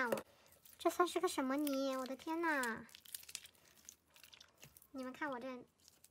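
Speech in two short stretches, with faint crinkling and crackling of white slime being stretched and pulled by hand in the gaps between.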